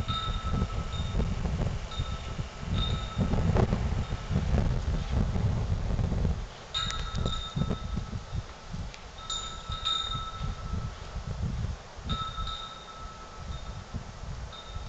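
A chime rings in short notes on and off, each strike sounding a steady high tone with a higher overtone. Wind rumbles on the microphone throughout, heavily for the first six seconds and more lightly after.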